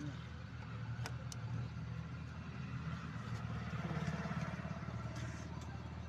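A motor vehicle engine idling steadily, with two light clicks about a second in.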